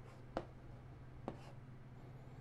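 Chalk writing on a blackboard: two short, sharp chalk taps about a second apart, with faint scraping between them, over a steady low hum.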